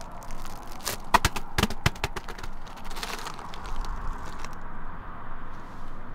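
Crackling and crunching as a plastic-wrapped roll of reflective foil bubble insulation is handled and set down on icy, crusty snow. A quick run of sharp cracks comes about a second in and another near three seconds, over a steady background noise.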